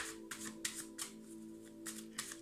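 A deck of tarot cards being shuffled by hand, quick soft strokes of card on card about three or four a second, over background music with steady held tones.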